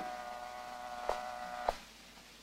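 X-ray machine exposure sound effect in an old-time radio drama: a click, then a steady electric hum for about a second and a half with a click partway through, cut off by a final click as the exposure ends.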